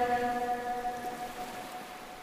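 Echo tail of a Quran reciter's long held note dying away, two steady tones fading out near the end over a faint hiss.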